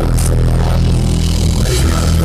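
Live hip-hop backing track played loud through a festival PA, captured on a phone: a heavy sustained bass line with a cymbal hit shortly after the start, between rap lines.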